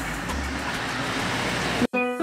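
Steady outdoor rushing noise with a low rumble. It cuts off abruptly near the end.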